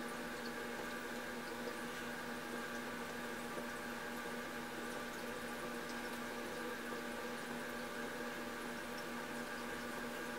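A steady hum made of several fixed tones over an even hiss, unchanging throughout.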